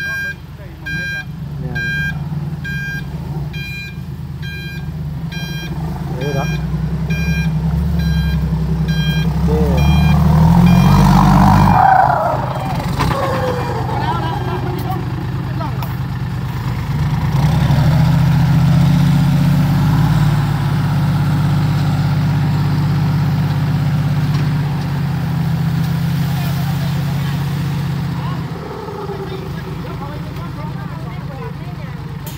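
Loaded dump truck's diesel engine running as it backs up, with a reversing alarm beeping repeatedly for the first several seconds, then revving up hard about ten seconds in. From about seventeen seconds until near the end the engine holds at higher revs while the hydraulic tipper raises the bed and tips out the load of soil.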